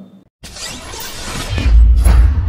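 Logo-intro sound effect: after a brief silence, a swelling whoosh with a bright hiss, growing into a loud, deep bass boom about a second and a half in.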